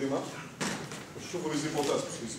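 A man's voice speaking, broken by one short, sharp noise about half a second in.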